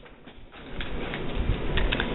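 Rustling and crinkling of a plastic clamshell wax-tart pack being lifted out of a cardboard box and handled. The sound grows louder through the clip, with a few light clicks and some low bumps near the end.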